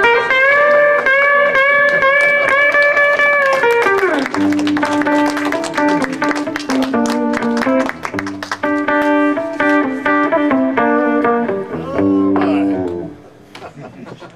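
Electric guitar played through a small combo amplifier: one long held, bent note for about four seconds that slides down, then a run of lower single notes, which stops about a second before the end.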